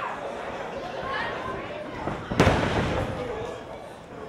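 Crowd chatter in a hall, with one sharp, loud impact from the wrestling ring about two and a half seconds in, briefly ringing in the room.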